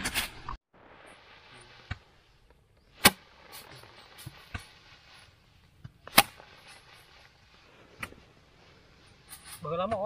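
Bundles of cut rice stalks beaten by hand against a wooden threshing board to knock the grain off: sharp thwacks every two to three seconds, the loudest two about three seconds apart, with fainter knocks and the rustle of straw in between.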